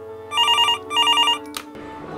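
A telephone ringing twice with a fast warbling trill, over a low steady tone, then a sharp click near the end as the ringing stops.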